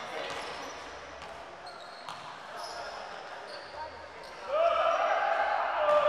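A basketball being dribbled on an indoor court, faint knocks echoing in a large hall. From about four and a half seconds in, louder voices call out over it.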